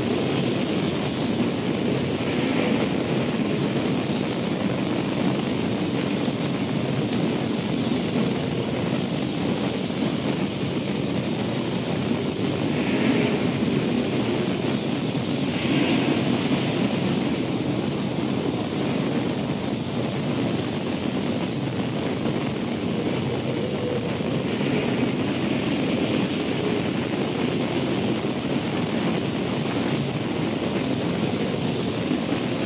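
Steady rushing storm-wind sound, a tornado sound effect, swelling in hiss now and then.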